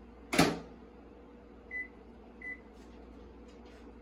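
A countertop microwave oven's door shut with one sharp latch clunk about half a second in. This is followed by two short high keypad beeps and a few faint button taps as the cooking time is keyed in, over a steady low hum.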